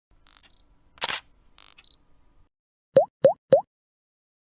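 Intro sound effects for a logo animation. A few short clicks and swishes come in the first two seconds. Then the loudest part: three quick rising 'bloop' plops, about a quarter second apart.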